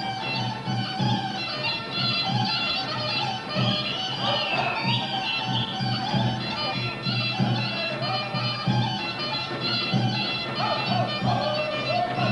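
Bulgarian folk dance music: a melody over a steady, even beat that drives the dance.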